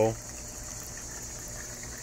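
Small garden fountain's water trickling steadily, with a faint steady high-pitched drone behind it.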